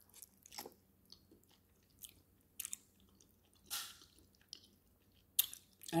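A person biting and chewing a piece of stewed cow foot, with irregular short mouth sounds and quiet gaps between them, one a little longer in the middle.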